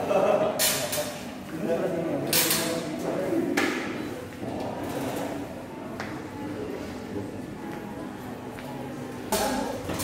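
Indistinct chatter of people's voices in a large indoor hall, with a few short sharp noises mixed in.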